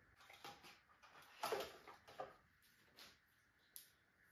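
Faint handling sounds of a small cardboard box being opened and its contents taken out: a few soft scrapes and rustles, then a short sharp click near the end.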